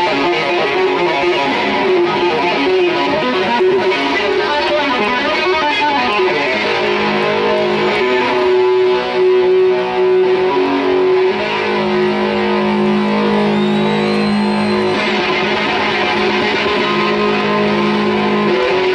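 Live rock band playing loud, with an electric guitar to the fore; from about seven seconds in, long held notes ring out under it.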